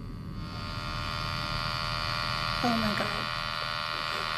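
Electromagnetic field amplifier giving out a steady electrical buzz that sets in about half a second in, the sign that it is picking up an electromagnetic field.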